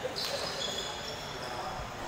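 Table tennis ball clicking off paddles and the table during a fast doubles rally.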